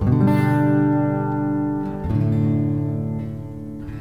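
Acoustic guitar playing the closing chords of a song: one chord struck at the start and another about two seconds in, each left to ring and fade.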